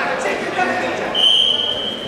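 Voices shouting and chattering in a wrestling hall. A steady high whistle tone starts just past halfway and holds for about a second.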